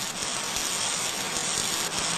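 Steady hissing welding sound effect for a gas welding torch flame as the torch and filler rod run a vertical weld upward.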